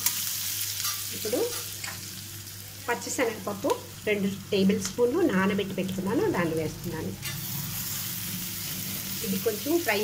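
Onions and green chillies sizzling in oil in a stainless steel kadai, with a metal spatula stirring and scraping against the pan. A person's voice is heard at times in the middle.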